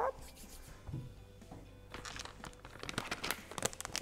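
A flexible granola pouch crinkling as it is handled, a dense run of crackles in the second half, over soft background music.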